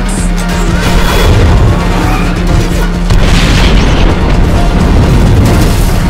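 Film action score, a pulsing track with a steady low drone, mixed with heavy booms and crashes from the chase. The loudest swells come about one second and three seconds in.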